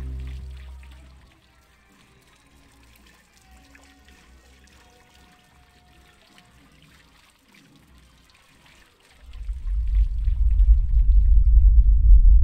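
Sustained music fading out over the first second, leaving faint trickling and splashing water from a fountain. About nine seconds in, a loud, deep rumbling sound effect swells in.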